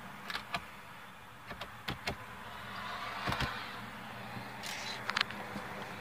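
Scattered light clicks and knocks over a faint steady hum inside a car cabin.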